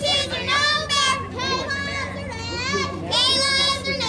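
Several high-pitched young girls' voices shouting and cheering at once, overlapping throughout, typical of players calling out from the dugout and field during a softball game.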